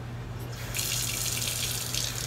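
A kitchen tap is turned on about half a second in, and water runs steadily into the sink.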